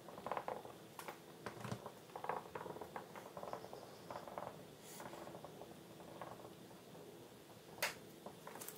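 Dry-erase marker writing on a whiteboard: faint, irregular scratchy strokes as letters and numbers are written, with one sharp click near the end.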